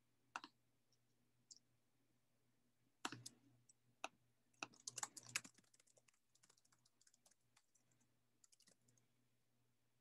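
Faint typing on a computer keyboard: scattered key clicks in irregular clusters, busiest a few seconds in, between stretches of near silence.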